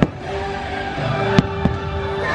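Aerial fireworks bursting: three sharp bangs, one right at the start and two close together about a second and a half in, over the show's steady soundtrack music.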